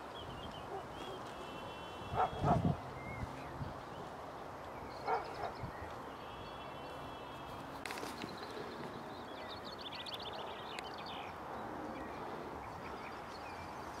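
Mallards calling as they fly over: a couple of short quacks about two seconds in and a fainter one about five seconds in, with higher bird calls between.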